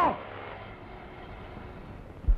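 Steady hiss and faint low hum of an old film soundtrack, after a falling tone fades out right at the start.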